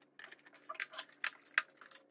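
Hard plastic Black Series Incinerator Stormtrooper helmet being handled and turned over, giving a quick, irregular run of light clicks and taps of plastic parts.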